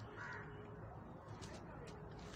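Quiet background noise with a low steady hum and a few faint clicks. A faint short sound comes about a quarter second in.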